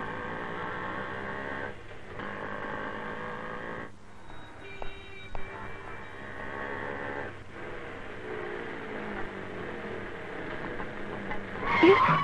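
Motorcycle engine running steadily, with a few brief dips in level.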